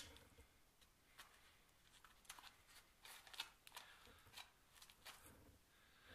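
A sharp click right at the start, then faint, scattered small clicks and rustles of a cable, a modular plug and hand tools being handled on a tabletop.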